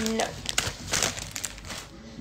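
Crinkly handling noise close to the microphone: several quick rustles in the first second and a half, then quieter.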